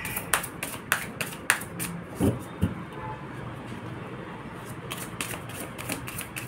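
Tarot cards being shuffled by hand: a run of quick, sharp card clicks and snaps, easing off for a few seconds in the middle and picking up again near the end. Two soft low thumps sound a little after two seconds in.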